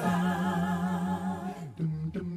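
Unaccompanied voice humming a long, wavering held note that slides down near the end, with a short break before a new note begins.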